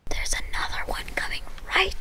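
Whispered speech: a boy talking in a hushed voice, over a low rumble.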